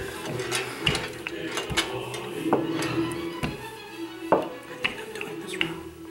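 A wooden rolling pin is pushed back and forth over cookie dough on a wooden table, with a sharp knock or clatter about once a second. Background music with long held notes plays underneath.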